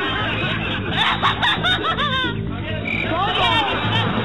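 Several voices calling out over steady background music, with short rising and falling cries.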